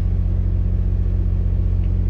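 A steady low rumble with a fast, even pulse, like a motor running.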